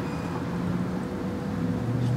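Steady hum of distant road traffic, low and continuous, with a faint thin tone held over it.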